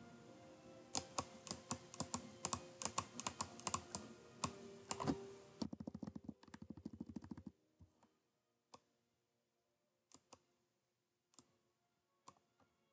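Clicking at a computer's keyboard and mouse. An irregular run of sharp clicks lasts about five seconds, then a fast string of quieter clicks, then a few single clicks spaced apart.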